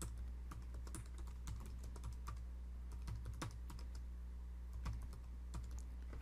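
Computer keyboard typing: a run of irregular key clicks as a command is typed out, over a steady low hum.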